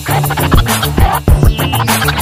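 Hip hop beat in a break between rapped lines, with turntable scratching over it; the deepest bass drops out as it begins.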